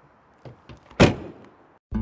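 A car door slammed shut once, about a second in, after a couple of light clicks. Acoustic guitar music starts right at the end.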